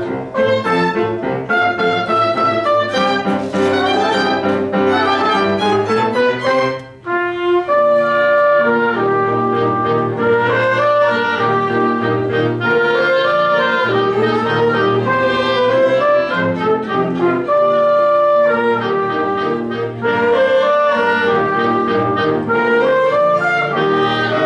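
A small live classroom ensemble, violin among the instruments, playing a piece under a conductor. The music breaks off briefly about seven seconds in, then resumes with longer held notes.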